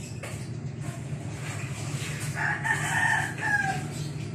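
A rooster crowing once, a call of over a second whose last part falls in pitch, over a steady low hum.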